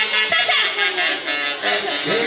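Huaylarsh dance music from a live band led by saxophones, playing continuously.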